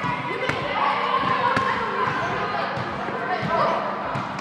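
Students' voices calling out in a large echoing sports hall, with several sharp thuds of a volleyball being hit and bouncing on the court.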